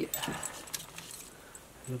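Hands rummaging in a metal dust bin, giving a few light clicks and rattles, mostly in the first second.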